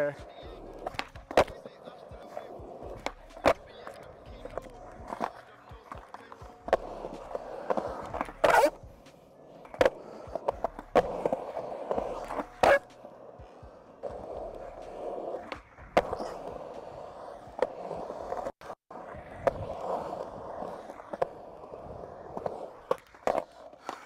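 Skateboard urethane wheels rolling on a concrete bowl, a steady rolling rumble. It is broken all through by sharp clacks and knocks of the board, two of them much louder in the middle.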